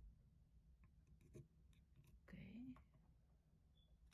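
Near silence with a few faint clicks and taps of plastic golf-tee pegs being lifted out of and set into a wooden triangle peg board, mostly about a second in, and a quiet spoken "okay" halfway through.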